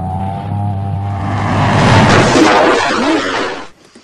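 Meteorite-strike sound effect: a low rumbling drone that swells into a loud crash of explosion-like noise, loudest about two seconds in. It stops abruptly shortly before the end.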